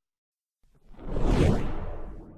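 A single deep whoosh sound effect, silent at first, swelling in about half a second in, peaking in the middle and then fading away.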